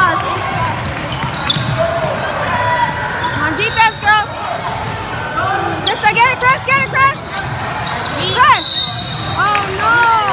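Basketball shoes squeaking on a hardwood gym court as players run and cut, in quick clusters of short high chirps, with voices in the background.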